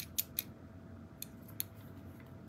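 Faint, sharp clicks of a small fischertechnik plastic push-button switch being handled and pressed: three quick clicks, then two more about a second later.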